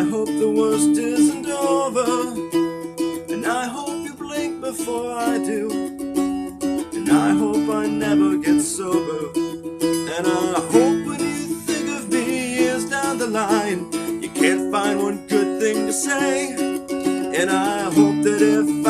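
Four-string First Act child's acoustic guitar in an open A–E tuning, strummed and played with a slide. Notes glide between pitches over a steady held low tone.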